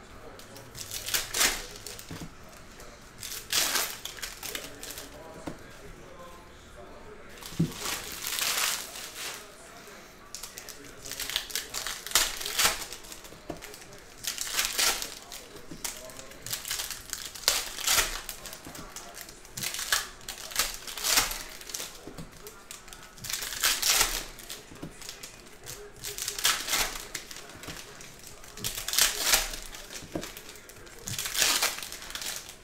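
Foil trading-card packs crinkling and tearing as they are handled and opened by hand, in short rustles every second or two.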